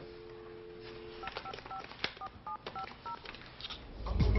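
Landline telephone dial tone, cut off about a second in, followed by about eight touch-tone keys pressed in quick succession, each a short beep with a click of the button.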